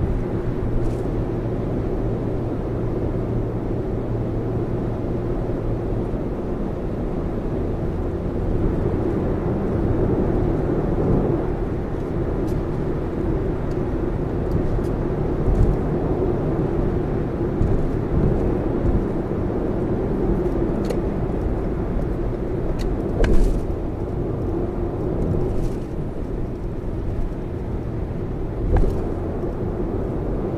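Steady road and tyre noise inside the cabin of a Lexus RX 450h cruising on an expressway: a continuous low drone. A few brief thumps stand out, the loudest about three-quarters of the way through.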